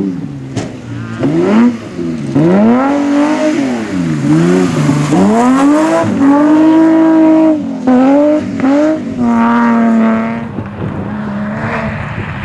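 Rally car engines revving hard as the cars pass on a gravel stage, among them a BMW E30, the pitch climbing and dropping again and again with gear changes and lifts. Near the end one note is held steady, then the sound drops away.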